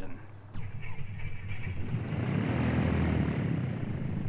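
A Beechcraft Musketeer's single piston engine starting. After a short click, the engine catches and a low rumble builds from about two seconds in as the propeller spins up.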